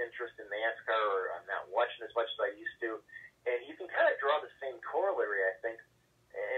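Only speech: a man talking over a telephone line, his voice thin and cut off in the highs.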